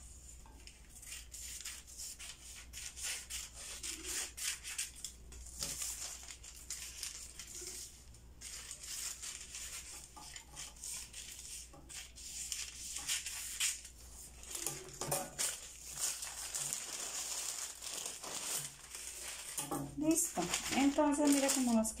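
Large fabric scissors cutting through a sheet of pattern paper in repeated snips, with the paper rustling and crinkling as it is turned and handled.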